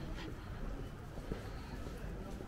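Quiet street ambience: a steady low rumble with a few faint clicks.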